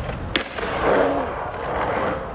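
Skateboard landing back into a concrete bowl after an air, with one sharp clack about a third of a second in, then its wheels rolling on the concrete.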